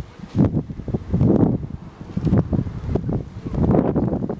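Wind buffeting the camcorder microphone in irregular low gusts.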